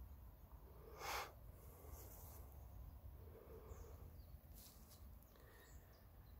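Near silence: faint outdoor ambience with a low steady rumble, and one brief soft rush of noise about a second in.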